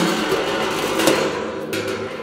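Steel locking ring of an open-head steel drum being pulled off the lid's rim: metal scraping and ringing against the barrel, with a sharp clank at the start and another about a second in.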